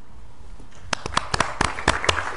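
Audience starting to clap about a second in, a few scattered claps quickly thickening into applause.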